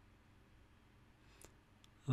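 Near silence: faint room tone, with two faint, short computer mouse clicks near the end.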